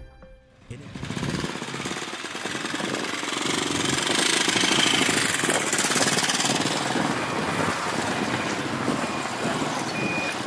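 Small motorcycle engines running close by with a fast rattling exhaust note. The sound comes in about a second in and swells toward the middle as the bikes pass.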